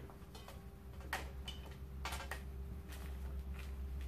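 Handling noise: a few irregular clicks and taps as a small desktop tripod stand and condenser microphone are fitted together and set down on a table, over a steady low hum.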